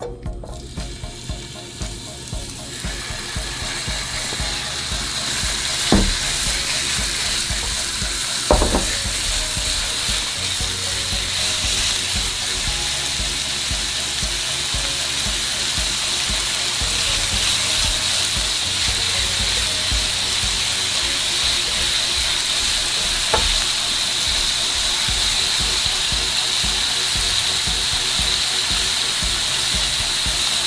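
Ground turkey sizzling in hot olive oil in a frying pan. The sizzle builds over the first few seconds as the meat goes in and then holds steady, with a few brief knocks of the spoon against the pan.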